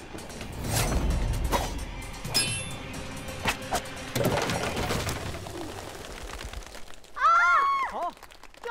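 Staged sound effects of a thrown knife: several sharp swishes and hits over background score, one with a ringing metallic ping about two seconds in. Near the end comes a loud shout of 'Great!'.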